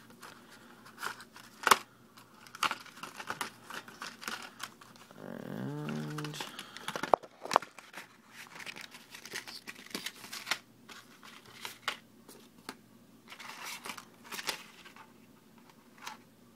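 Small cardboard box and clear plastic tray being opened and handled by hand: scattered clicks, taps and crinkles of the packaging.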